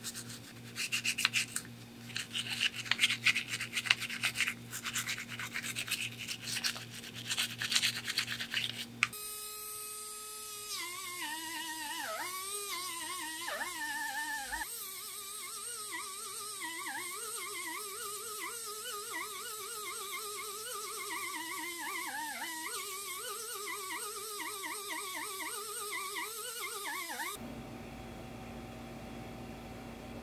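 A toothbrush scrubbing a toy truck wheel in soapy water, quick rapid strokes, for about the first nine seconds. Then a small high-speed rotary tool with a felt buffing wheel whines, its pitch dipping and rising as it is pressed against the wheel hub to polish it. It stops a few seconds before the end.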